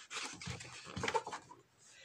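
A glossy picture-book page being turned by hand: a short, faint paper rustle with small crackles that stops about a second and a half in.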